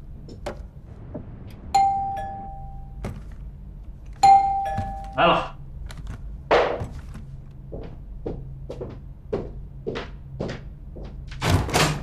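An electronic doorbell chiming twice, a two-note ding-dong about 2 seconds in and again 4 seconds in. It is followed by a run of evenly spaced footsteps and a louder clatter near the end as the door is opened.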